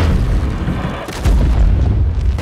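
Film sound design: a sudden, heavy, deep boom about a second in, as flames fill the picture, like a fiery blast.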